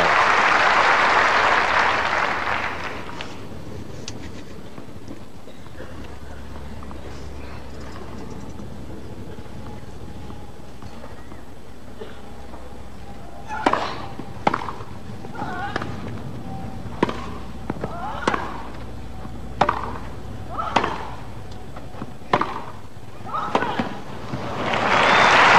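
Crowd applause dying away over the first few seconds, then quiet crowd ambience. From about 14 s a grass-court tennis rally: sharp racket strikes on the ball about once a second.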